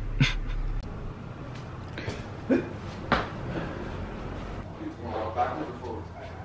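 A man's short laugh, then two sharp knocks about half a second apart, and faint voices near the end over a steady low hum.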